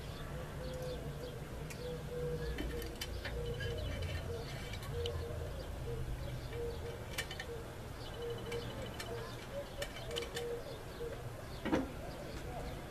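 Pigeons cooing repeatedly in the background over a low steady hum, with scattered light metallic clicks of gun parts being fitted back together during reassembly.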